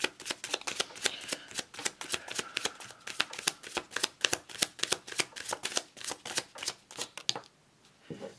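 A deck of tarot cards being shuffled by hand: a quick, even run of crisp card slaps, about four or five a second. It stops suddenly a little after seven seconds in.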